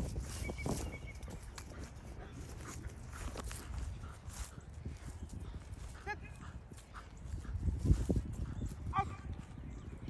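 Wind rumbling on the microphone, with a German Shepherd giving two short whines, one past the middle and one near the end. A louder low thump comes shortly before the second whine.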